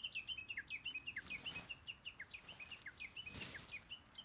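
A songbird singing a fast, continuous string of short, varied chirps, several a second, some sliding down in pitch. Twice there is a soft rustle of tarp fabric being shaken out.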